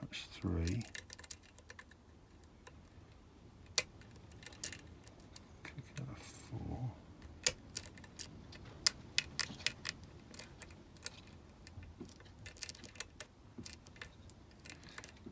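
Lock pick and tension wrench working the pins of a 5-pin Medeco high-security cylinder: irregular small metallic clicks and ticks, a few much sharper than the rest, as the pins are lifted and turned toward a set.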